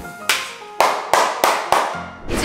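Five sharp percussive hits, the last four about a third of a second apart, over background music.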